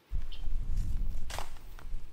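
Low, uneven rumble of noise on an outdoor camera microphone that starts abruptly, with a few light clicks about a second in and near the end.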